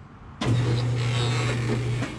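Senox Barracuda seamless gutter machine starting suddenly about half a second in and running with a steady low hum over a rushing noise as its rollers form sheet-metal coil into 6-inch K-style gutter, then stopping.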